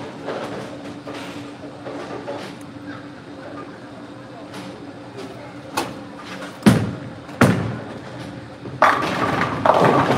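A bowling ball dropped onto the lane with a heavy thud about two-thirds of the way in, a second knock under a second later, then the crash of pins being hit about two seconds on, running to the end.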